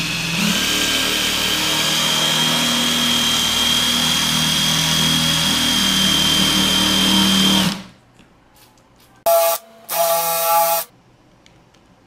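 Cordless drill spinning a diamond bit through wet porcelain tile: a steady grinding whine with a high whistle that runs for about eight seconds and then stops abruptly, the bit lubricated with soapy water to keep the tile from cracking. About a second and a half later come two short bursts, each well under a second.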